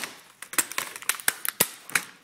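Irregular run of sharp plastic clicks and knocks, about ten in two seconds, from a smashed ThinkPad laptop being handled and shifted on a desk.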